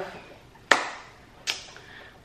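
Two sharp taps less than a second apart, the second fainter, each fading quickly in a small room.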